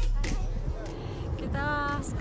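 Background music cuts off at the start, leaving the open-air noise of a crowd of walkers on a trail. A woman's voice sounds briefly near the end.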